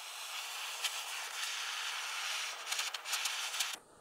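Handheld propane torch burning with its blue flame on a stainless steel shift knob: a steady hiss with a few faint ticks, stopping just before the end.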